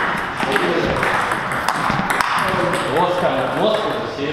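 Table tennis rally: the ball clicks sharply off the bats and the table in quick, irregular succession. Men's voices carry in the hall behind it.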